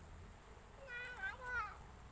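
A high-pitched voice-like cry in two parts, each falling in pitch, about a second in.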